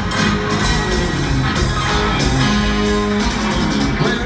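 Southern rock band playing live at full volume, electric guitars to the fore, with no vocals. It is heard from within the crowd of an amphitheatre.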